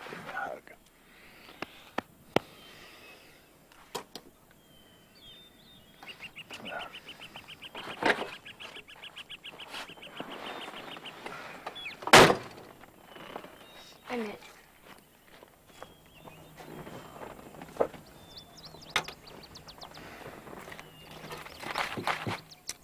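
Birds chirping, with a fast trill of repeated chirps lasting about five seconds, and a single loud thunk about halfway through.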